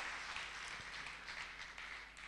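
Faint audience applause, fading away.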